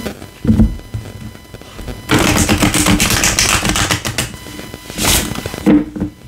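Tarot cards being shuffled by hand: a thump about half a second in, then a rapid run of card clicks for nearly two seconds, and another short burst of card noise near the end.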